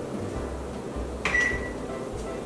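A GE over-the-range microwave's keypad beeps once about a second in: a key-press click followed by a short, steady, high beep as the timer is set.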